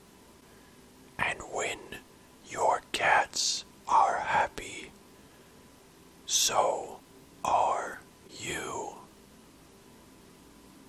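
A person whispering in short phrases with pauses between them.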